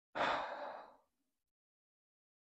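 A man's breathy sigh: a single exhale lasting under a second, fading out.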